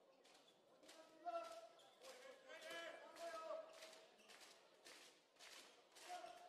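Faint bounces of a handball dribbled on a sports-hall floor, a series of short knocks, with distant players' shouts and voices, the loudest a little after a second in.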